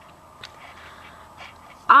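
Quiet room tone with two faint clicks during a pause in talk; a girl's voice starts again near the end.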